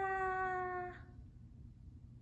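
A woman's high, sing-song call of "Go-go!" (고고), the second syllable drawn out on one slightly falling pitch and cut off about a second in.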